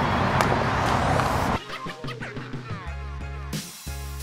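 A small rugged smartphone hits asphalt with a brief knock over outdoor noise. About a second and a half in, background music cuts in.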